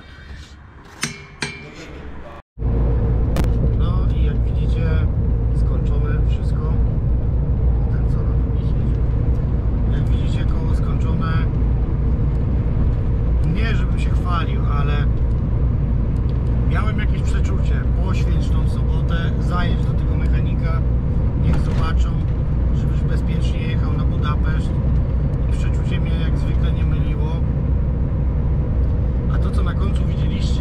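Two sharp clicks about a second in, as the torque wrench is pulled on a truck's wheel nut. Then a loud, steady low rumble with a steady hum: a lorry's engine and road noise heard inside the cab while driving.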